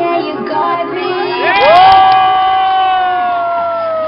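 A crowd cheering, with one long, high, held "woooo" whoop that rises about a second and a half in and slowly sags in pitch, over music from a street sound system.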